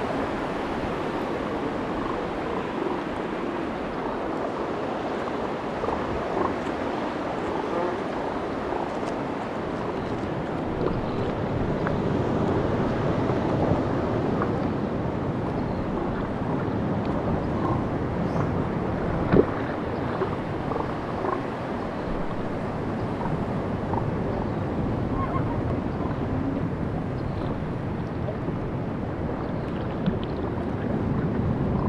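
Sea water lapping and splashing against a stand-up paddleboard, with wind on the microphone, a steady wash full of small splashes. There is one sharp knock a little past the middle.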